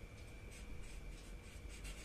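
Felt-tip marker writing on chart paper: a series of short, faint strokes.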